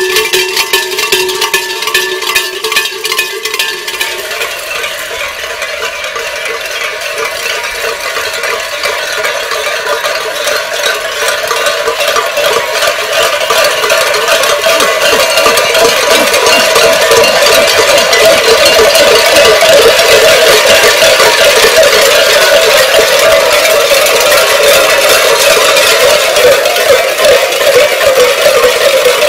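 Many large metal bells, cowbell-type, hung from the belts of masked carnival dancers, clanging in a dense, continuous jangle as the dancers move. A few bells ring with held tones at first. The clatter then swells, growing louder over the first fifteen seconds or so as the group comes near.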